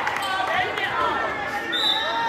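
An indoor volleyball rally in an echoing gym: the ball being struck, with players and spectators calling out.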